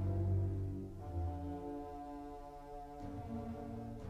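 Orchestral music: sustained low brass chords, the harmony shifting about a second in and again about three seconds in.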